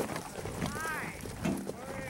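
Young voices calling out, with one high drawn-out call that rises and falls in pitch about half a second in and another shorter call near the end.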